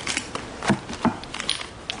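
Light rustling with a few irregular sharp clicks and ticks: an evidence package being opened by hand.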